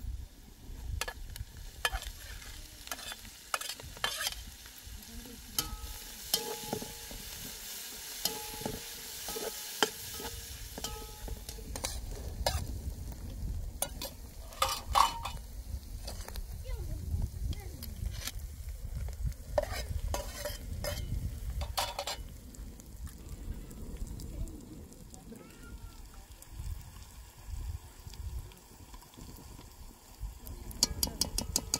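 Metal spoon scraping and clicking against a steel cooking pot and serving plates as chopped herbs and dried berries are spooned in and stirred, over a steady sizzle of ingredients frying in hot oil on a wood fire. The clicks come irregularly, the sharpest about halfway through.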